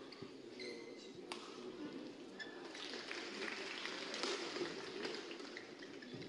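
Badminton rally in a hall: sharp racket strikes on the shuttlecock and short squeaks of shoes on the court mat. Crowd noise swells in the middle.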